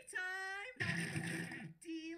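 A cartoon character's voice sing-songing "steak time": a long held note on "steak", then a second note on "time" near the end.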